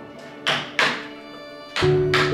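Wooden mallet striking a carving chisel into a log: two sharp blows about a third of a second apart. Background music runs underneath and comes in much louder near the end.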